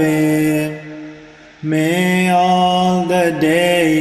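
Buddhist blessing verses chanted in long, held, slightly wavering notes. The first phrase dies away within the first second and the next held phrase begins about a second and a half in.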